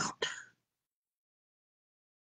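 A speaking voice finishing a word, most likely 'about', in the first half second, then silence.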